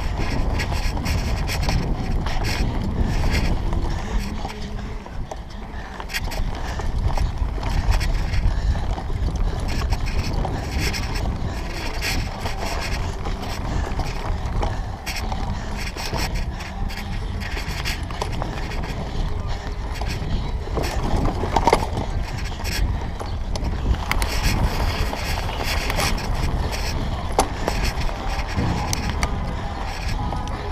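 Mountain bike ridden fast over rough dirt and grass, heard from a handlebar-mounted camera: a steady low wind rumble on the microphone with frequent rattles and knocks from the bike over bumps.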